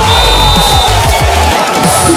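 Loud electronic dance music with a heavy pulsing bass and a slowly falling synth line; the bass drops out briefly near the end.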